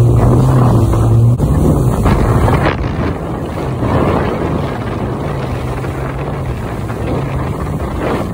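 Jet ski engine running at speed over water, with wind buffeting the microphone and spray rushing. The strong steady engine hum drops away about a second and a half in, leaving mostly wind and water noise, then comes back fainter for a few seconds.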